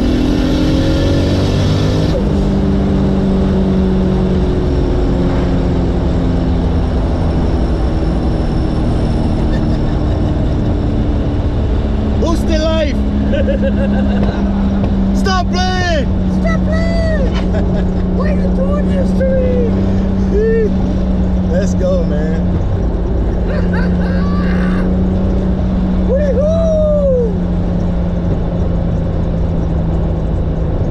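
The 1996 Lexus SC300's turbocharged 2JZ-GTE inline-six, heard from inside the cabin, climbs in revs at full throttle in a fourth-gear pull with a rushing noise. About two seconds in the throttle closes and both drop off at once. The engine then runs on at a steady drone that slowly falls in pitch, with laughter and voices over it from about twelve seconds in.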